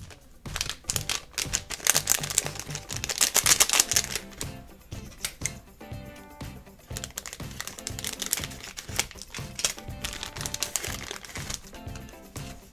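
Plastic foil blind bag crinkling and crackling as it is handled and opened, loudest in the first few seconds and again near the end, over background music with a steady beat.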